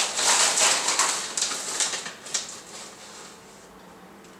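A measuring cup scooping dry granola out of its bag: a dense rustling crackle of clusters and crinkling bag that dies away after about two and a half seconds.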